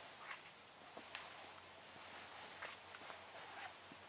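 Near silence: faint room tone with a few light ticks and clicks scattered through it.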